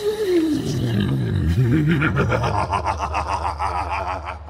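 Deep, distorted monster vocalisation: a growl that slides down in pitch, then wavers low and breaks into a rapid rattling pulse in its second half.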